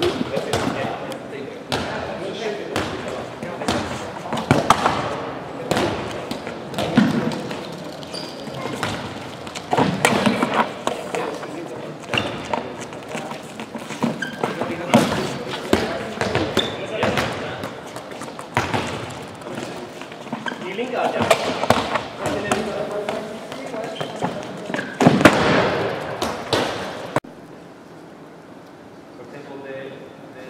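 Handballs bouncing and thudding on a wooden sports-hall floor and being shot at the goal in a goalkeeper drill, a sharp impact every few seconds, over the talk and calls of players in a large gym.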